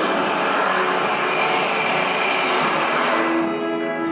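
Show soundtrack music with a loud whooshing pass-by effect laid over it, swelling and then fading out about three seconds in.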